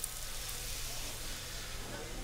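Steady sizzling hiss from a large pan of potatoes, bacon and Morbier cheese cooking, over a low steady hum.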